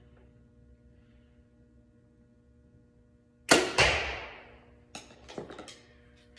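A compound bow firing off a back-tension release, which goes off on steady pulling rather than on a trigger. There is a sudden sharp crack about three and a half seconds in, a second sharp hit a third of a second later that rings out over about a second, then a few lighter clicks.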